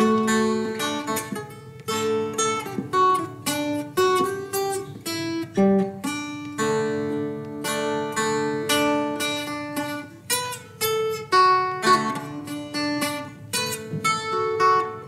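Solo instrumental music on a plucked string instrument in the manner of an acoustic guitar: single picked notes and chords that each ring and fade, one after another.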